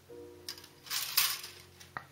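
Plastic model-kit sprue being handled and set aside: a brief rustling scrape about a second in and a sharp plastic click near the end, over quiet background music.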